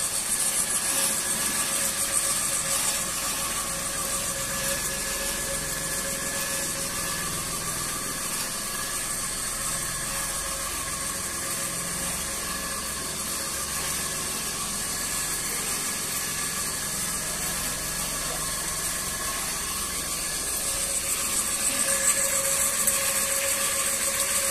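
Homemade rotary drum sieve (trommel) running, its steel-mesh drum turned by an electric motor through a V-belt and large pulley: a steady mechanical hum with a few constant tones over a hiss, growing slightly louder near the end.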